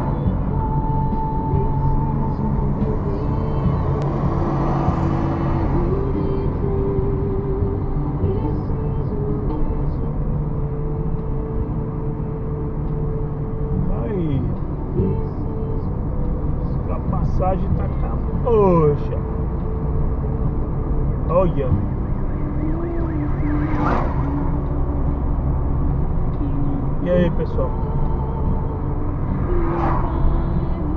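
Steady road and engine rumble inside a car's cabin while driving along a highway.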